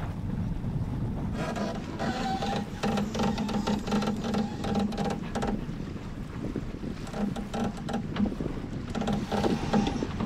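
Sailboat under sail, with wind buffeting the microphone and water rushing past the hull. Over this a line is trimmed in two spells, starting about a second in and again past the middle, with rapid mechanical clicking typical of a sheet winch being worked.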